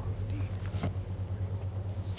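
Steady low electrical hum with a few faint clicks over it.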